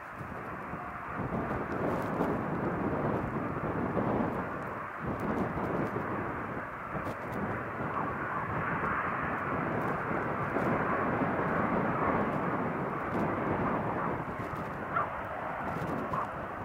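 Jet engine noise of a twin-engine Boeing 737 on the runway: a steady rushing rumble that grows louder about a second in and then holds.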